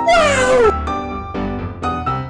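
A single long cry, like a meow or a wail, falling in pitch, over a bouncy piano tune of short repeated notes.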